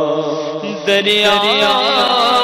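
A man's voice singing a naat (Urdu devotional poem) unaccompanied: a long held note fades away, then about a second in a new phrase begins with a wavering, ornamented melody.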